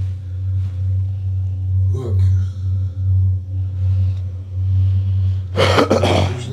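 A loud, steady low drone that pulses slightly, with a man's voice briefly about two seconds in and again near the end.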